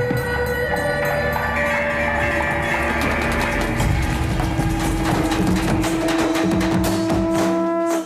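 Traditional Sri Lankan procession music from the Kataragama perahera: a wind instrument holding long notes over drumming, and the drumming gets busier about three seconds in.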